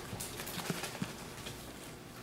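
A few soft taps and knocks in the first second or so: a plastic glue bottle being picked up and a cardboard rocket body tube being handled on a tabletop.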